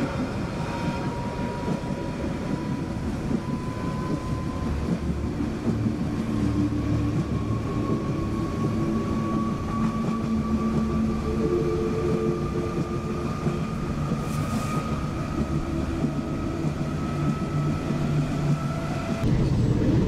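Steady running noise of a moving passenger train, heard from aboard, with a faint whine that rises slowly in pitch.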